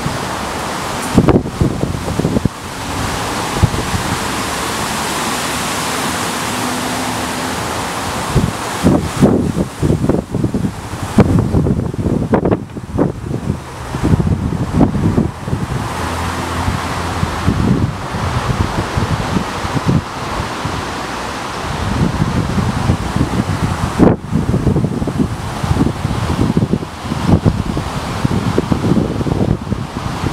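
Wind blowing across the microphone: a steady rush with irregular low buffeting thumps in gusts through most of the clip.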